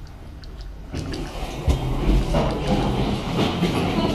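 Elevator doors opening about a second in, letting in the rumble and clatter of a train at the station platform, which carries on to the end.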